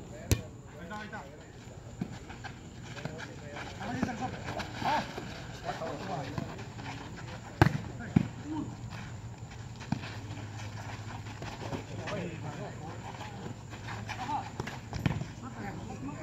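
A volleyball smacked by players' hands: a sharp slap just after the start and a louder one about seven and a half seconds in, with players' voices and calls throughout.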